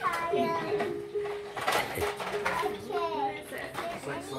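Children and adults talking over one another, with a steady electronic tone underneath that steps down in pitch a few times.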